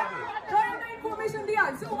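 Speech only: chattering voices in the audience, then a host starting to speak over the PA near the end.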